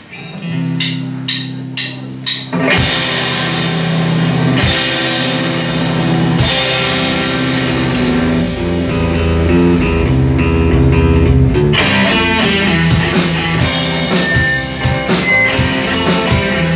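Live rock band starting a song: a few sharp, separate hits in the first two seconds, then electric guitars and drum kit come in together and play on steadily.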